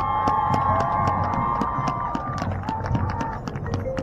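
Audience clapping and cheering as a marching band opens its show with a held chord that lasts about two and a half seconds, followed by a shorter single note near the end.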